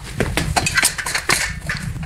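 Someone climbing an aluminium multi-position ladder: a string of irregular metallic clanks and knocks from feet and hands on the rungs.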